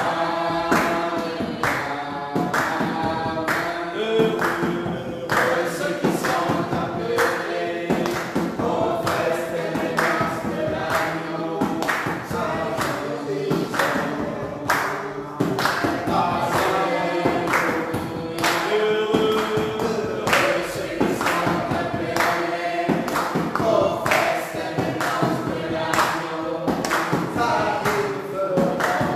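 Group of voices singing a gospel song together, over a steady beat of sharp strikes.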